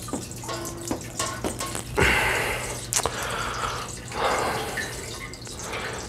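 Beer running from an auto-siphon's tubing into a keg: a splashing trickle of liquid that swells about two seconds in and again near four seconds, as the siphon flows after being primed with one pump.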